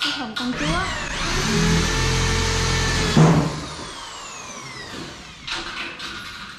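A handheld electric power tool spins up, runs steadily for about a second and a half, gives a short louder burst as it comes off, then winds down over about two seconds.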